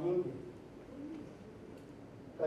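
A man's voice in the parliament chamber: the end of a spoken phrase right at the start, then low room sound with a faint low voiced murmur about a second in.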